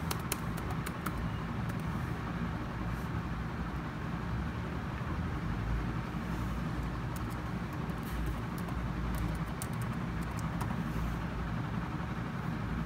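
Laptop keyboard keys being typed on: irregular clusters of light, sharp clicks over a steady low rumble.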